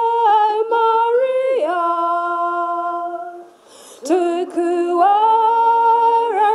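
Women's voices singing a hymn unaccompanied in slow, long-held notes, breaking off briefly about three and a half seconds in before the singing resumes.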